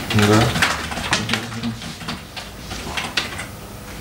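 A man's voice for a moment, then a run of soft, irregular clicks in a small room.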